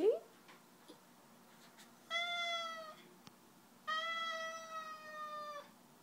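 Domestic long-haired cat meowing twice: two long, drawn-out meows, the second longer and drifting slightly down in pitch.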